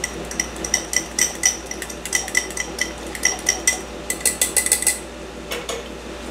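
A utensil stirring melted butter and brown sugar together in a small dish: rapid, irregular clinks against the side of the dish, each ringing briefly.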